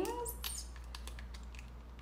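Faint scattered small clicks and light rustling, as of small objects such as earrings being handled, over a low steady hum.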